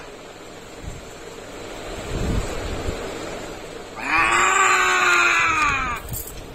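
A boy crying out in one long, loud wail about four seconds in, its pitch slowly sagging, after a quieter stretch.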